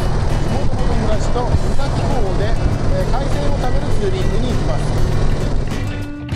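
Indian Roadmaster's V-twin engine running steadily with wind rush while the motorcycle is ridden, picked up by a camera on the bike, under a man's talking.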